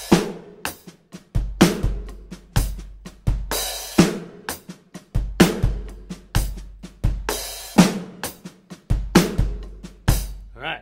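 Electronic drum kit played slowly: a funk groove of bass drum, snare and hi-hat, with open hi-hat strokes that ring on longer between the closed ones.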